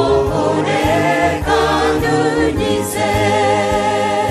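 Choir singing a Kinyarwanda gospel song in harmony, holding notes with vibrato over a steady keyboard and bass backing.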